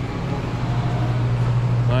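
A steady low hum that runs evenly throughout.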